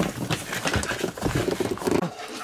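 Handling noise: a quick, irregular run of knocks and clatter from hard objects being picked up and moved about.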